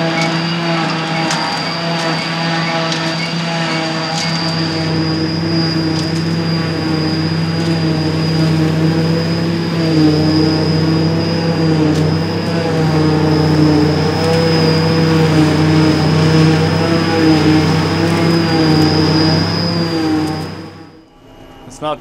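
A trailed JF forage harvester chopping grass silage behind a Fendt 820 Vario tractor, with a tractor alongside: a steady, loud engine drone with a constant high whine over it. It cuts off suddenly about a second before the end.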